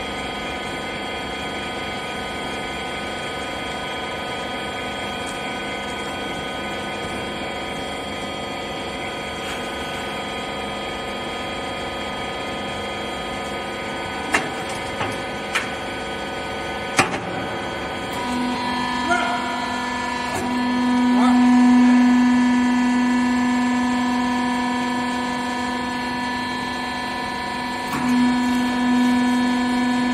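The hydraulic power unit of a wiper-rag baler runs with a steady hum, with a few sharp clicks around the middle. About two-thirds of the way in the tone changes and grows louder, peaking and then easing, as the ram works the bale. It changes again near the end.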